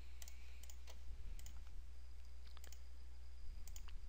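Several faint, scattered computer mouse clicks over a steady low electrical hum.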